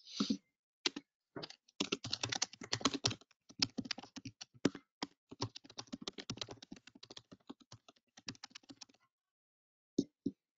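Typing on a computer keyboard: a fast, uneven run of key clicks that stops about a second before the end.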